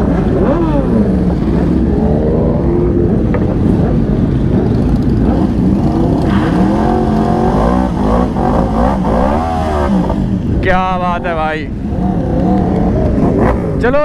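Motorcycle engine revved hard during a burnout, its pitch rising and falling again and again, with quick sharp revs a little before the end.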